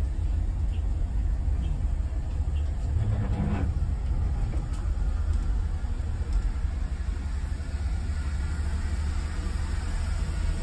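Steady low engine and road rumble heard from inside a moving bus's cab, with a brief louder swell about three seconds in.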